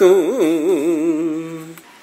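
A man chanting Sanskrit verse unaccompanied draws out the last syllable of a line on a single held note with a wavering, melodic pitch. The note fades away and stops just before the next line begins.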